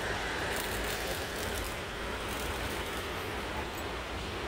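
Steady outdoor background noise: a low rumble under a faint hiss, with no engine running.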